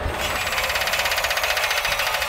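Title-sequence sound effect: a harsh, rapidly pulsing buzz with no clear pitch, mostly in the upper range.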